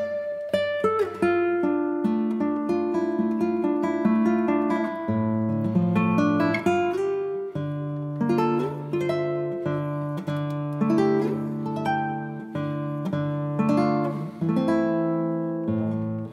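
Background music: an acoustic guitar picking a melody, note after note with sharp attacks that ring and fade.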